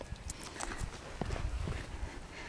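Irregular soft crunching and tapping in snow, a string of small clicks over a low rumble, as of hands or feet pressing into snow close to the microphone.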